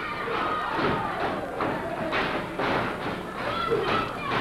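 A series of thuds from wrestlers' boots and bodies striking the wrestling ring's canvas-covered boards as they run across the ring, with crowd voices behind.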